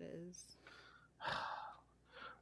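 The tail of a spoken word, then a pause, then a short audible breath, a single rush of air about a second and a quarter in, taken close to the microphone.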